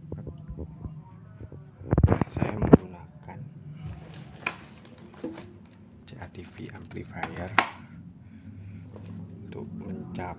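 Handling noises from setting down a metal hand crimping tool and moving things on a tiled floor: a short loud rattling rasp about two seconds in, then a few scattered clicks, over a low steady background hum.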